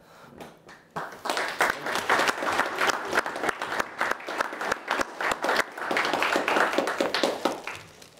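A small group of guests applauding. The clapping starts about a second in and dies away near the end.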